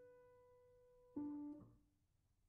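Grand piano playing a slow, very soft passage: a held note fades away, then a single new note is struck about a second in and is damped short soon after.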